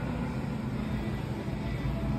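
Steady low hum and rumble of supermarket background noise.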